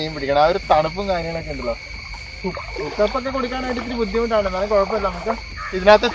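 A man talking, with wavering intonation and short pauses, while a steady high-pitched drone runs unbroken underneath.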